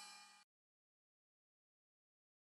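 Near silence: the last sustained notes of a children's song fade away within the first half second, then dead silence.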